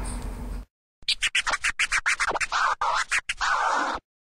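A turntable-style scratch sound effect: a fast run of short chopped scratches starting about a second in, cutting off abruptly at the end. Before it, the tail of a whispered "shhh" fades out.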